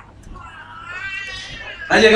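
A single long, high-pitched wavering cry lasting about a second and a half, rising and then falling in pitch.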